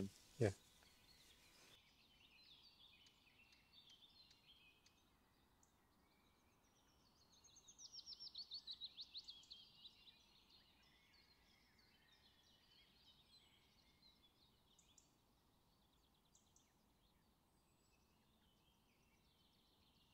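Quiet woodland ambience with scattered faint, distant bird chirps. About seven and a half seconds in, a songbird sings one rapid trill of about a dozen notes falling in pitch, lasting about two and a half seconds.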